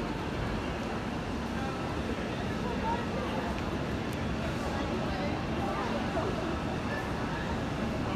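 Railway platform ambience: a steady low rumble with faint distant chatter from people waiting.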